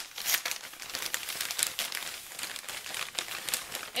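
Paper wrapping crinkling and tearing as a package is unwrapped by hand: a continuous run of crackles and rustles.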